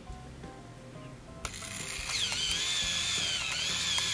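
A click, then the Kodak S88's motor drive rewinding the film into its canister at the end of the roll: a steady whir with a high, wavering whine that builds up and carries on.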